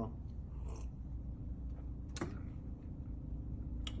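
A man drinking from a small clear plastic cup: faint sipping and swallowing over a steady low room hum, with a sharp click about two seconds in and another just before the end.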